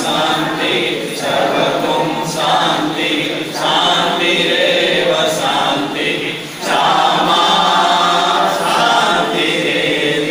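A group of men and women chanting a devotional Hindu prayer together in unison, led by a man reading it into a microphone. It goes in sung phrases with short breaks between them.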